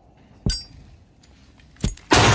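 Two sharp impact hits from horror film-trailer sound design, about a second and a half apart. The first has a short, bright metallic ring.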